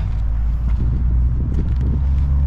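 A steady low engine rumble from a motor vehicle running nearby.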